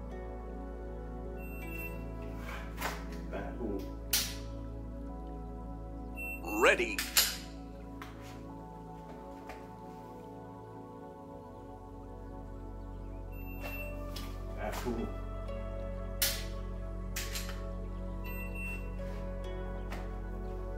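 Shot timer's electronic start beep, then about two to three seconds later a sharp dry-fire trigger click from a pistol drawn from concealment. This happens twice, with clothing rustle around each draw and a louder rustle and knock between them. Soft background music runs underneath.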